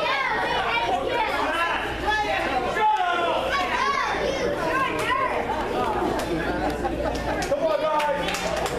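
Indistinct crowd chatter, many people talking at once in a large echoing hall, with no single clear voice.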